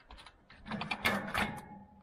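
A quick run of mechanical clicks and metal clatter as a cordless drill's chuck is loosened by hand and the drill is pulled off the ice auger's welded hex adapter shaft.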